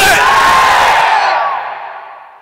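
A man shouting through a PA system, one drawn-out word held for about a second and a half, then its echo in the hall fading away.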